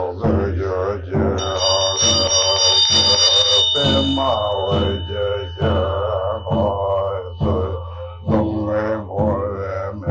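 A man chanting a Tibetan Buddhist mantra in a steady recitation with short breaks for breath, over a low steady hum. A high ringing tone sounds about a second and a half in and lingers for several seconds as it fades.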